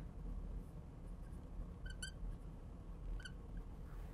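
Marker squeaking on a glass lightboard while an equation is written: two quick, high squeaks about two seconds in and a third a little over a second later, over faint room hum.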